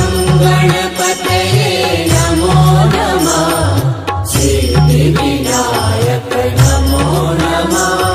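Hindi devotional chant to Ganesh: a line ending 'namo namah' is sung just after the start, then the music carries on with a steady repeating bass line under a melody.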